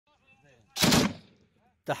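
A short, loud burst of machine-gun fire, several rapid shots about three-quarters of a second in, echoing away over half a second.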